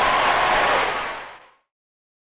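Studio audience applauding and cheering at the end of a song, fading out about one and a half seconds in.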